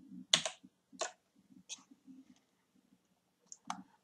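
A few isolated clicks of computer keys, four or so spread out: one about a third of a second in, two more about a second apart after it, and a last one near the end.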